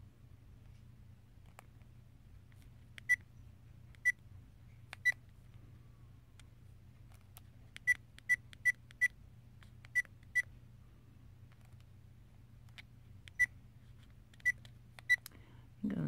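ODRVM action camera's button-press beeps as its menu buttons are pressed: about a dozen short, high beeps at one pitch, spaced irregularly, with a quick run of four near the middle.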